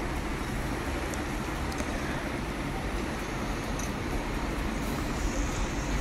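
Onions and mint leaves frying in oil in an aluminium pressure cooker: a steady sizzle, with a few faint scrapes and taps of the steel ladle as they are stirred.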